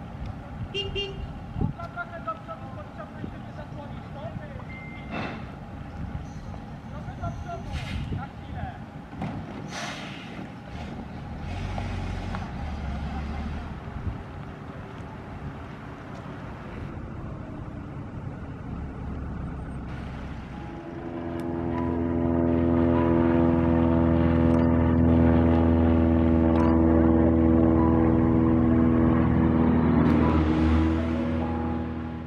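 Ikarus 280 articulated bus's diesel engine running as the bus moves slowly, with scattered clicks and knocks. About two-thirds of the way through, a loud, steady horn blast sounds and is held for around nine seconds.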